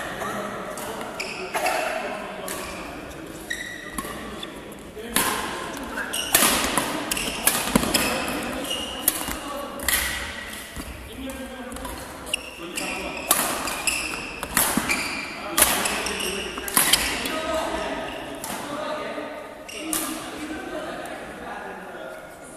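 Badminton rally: a string of sharp racket strikes on the shuttlecock, most of them in the middle of the stretch, with trainers squeaking on the court floor between hits, all ringing in the echo of a large sports hall.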